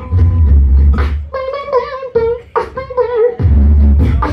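Live beatboxing into a handheld microphone. A deep sustained bass tone comes first, then a wavering, pitched melodic line broken by sharp percussive clicks, and a deep bass returns near the end.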